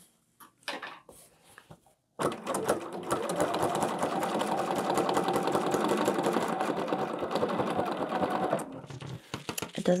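Domestic sewing machine stitching at speed for about six seconds, starting about two seconds in and stopping shortly before the end. It is doing free-motion thread painting with the top thread tension just turned down a little.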